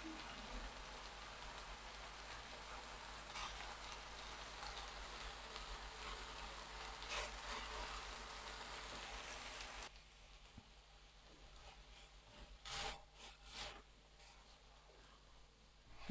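Faint, steady sizzling of thinly sliced beef frying in a nonstick pan over high heat, with a few short scrapes of a silicone spatula stirring the meat. The sizzle cuts off suddenly about ten seconds in, leaving near silence broken by a couple of brief soft sounds.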